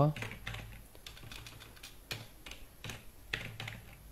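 Computer keyboard keys clicking irregularly as a line of code is typed.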